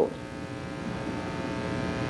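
Steady electrical buzz over a background hiss, growing slightly louder across the pause.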